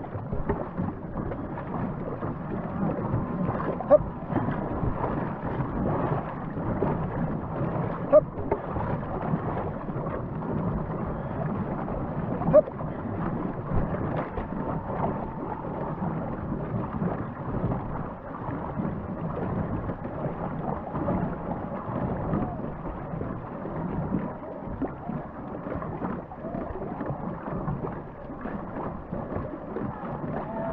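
Water rushing and splashing along a paddled canoe's hull, close to a deck-mounted microphone, with a few sharp knocks spaced about four seconds apart in the first half.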